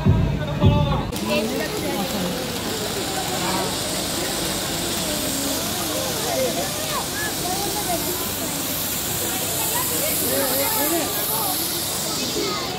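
Floor-standing spark fountains shooting sparks, with a steady hiss that starts suddenly about a second in. Crowd voices carry on underneath.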